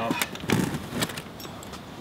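Metal clicks, knocks and rattles of a bicycle trailer's hitch and frame as the trailer is unhitched from a recumbent trike and moved aside, a few sharp clicks in the first second and then quieter.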